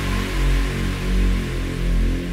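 Electronic drumstep track: deep sustained bass notes swelling in regular pulses, with the bright high synth line dropping away as the stretch begins.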